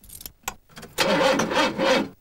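A few sharp clicks of a key in a lock, then a car engine cranking for about a second without catching: a hard start.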